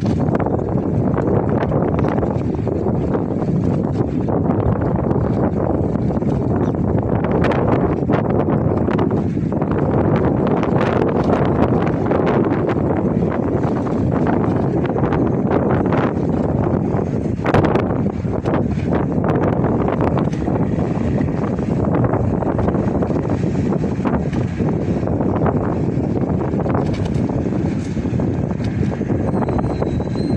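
Wind buffeting the microphone: a loud, steady rush of noise with occasional stronger gusts, one of them about two-thirds of the way through.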